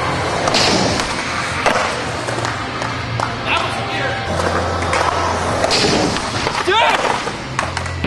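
Skateboard rolling on a concrete skatepark floor, with sharp clacks and knocks of the board, about half a second in, just under two seconds in and near six seconds, under music.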